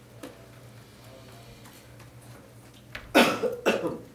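A person coughing twice, about three seconds in, loud and close over a quiet room.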